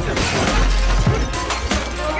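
Glass shattering, a crash sound effect that sets in just after the start, laid over a hip-hop beat with a deep, steady bass.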